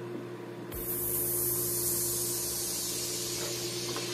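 A hiss like escaping air or a spray starts abruptly about a second in and carries on, slowly fading, over a steady electrical hum.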